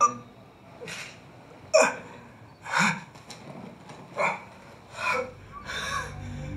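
A person's short, sharp gasping breaths, about one a second, seven in all. Low music rises in near the end.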